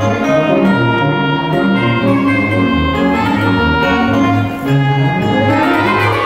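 Theatre organ playing: low notes step along under held chords, and a rising sweep of pitch comes about five seconds in.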